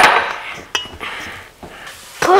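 Kitchenware knocking on a stone countertop: a sharp knock at the start as a glass measuring cup is set down, then a lighter clink with a brief ring under a second later.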